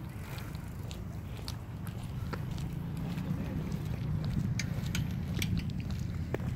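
Low, flickering rumble of wind on the phone's microphone, growing a little louder towards the end, with a few faint scattered clicks.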